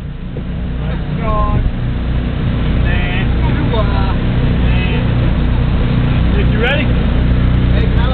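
Steady low hum of car engines idling, with several people talking faintly over it.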